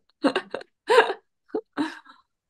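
Laughter in about four short voiced bursts, separated by brief silences.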